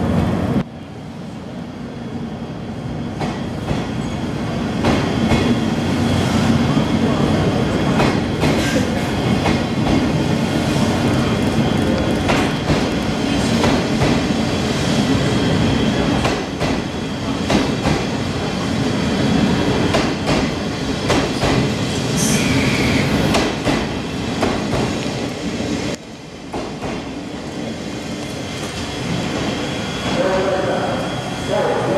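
Blue Train sleeper coaches rolling past a platform as the train pulls out. There is a steady rumble, and the wheels click repeatedly over the rail joints.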